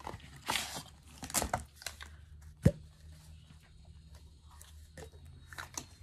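Cardboard packaging being handled and opened, with rustling and scraping as a toothbrush case is slid out of its box. One sharp knock a little under three seconds in is the loudest sound, with quieter handling noises after it.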